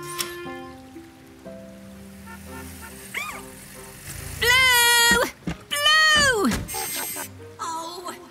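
Light cartoon background music of steady held notes. About halfway through, two loud pitched calls cut in one after the other, the second sliding sharply down in pitch at its end.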